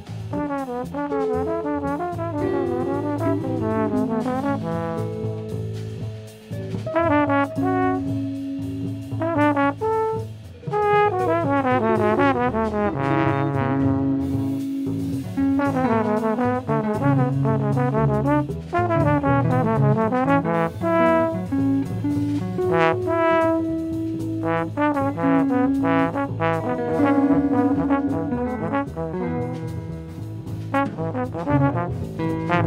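Live jazz quartet: trombone playing over upright bass, guitar and drums, with quick runs of notes rising and falling over a steady bass line.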